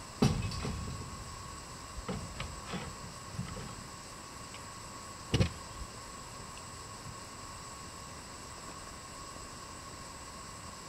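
Hollow knocks and clunks from a horse float with a horse standing in it. The loudest come just after the start and again about five seconds in, with a few lighter knocks between.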